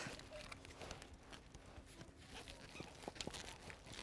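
Faint rustling of canvas and webbing strap, with small clicks, as the strap is worked through a cam buckle on a tent's ridge tensioner and pulled tight.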